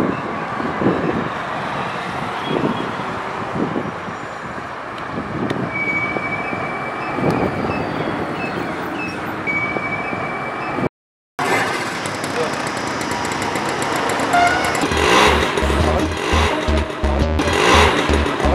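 Road traffic with a bus passing, with two short steady high tones in it. After a cut, a motorcycle engine comes in about fifteen seconds in, running with a low, even putter.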